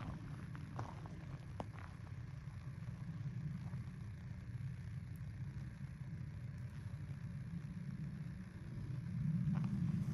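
A low, steady rumble that swells near the end, with a few faint ticks in the first two seconds.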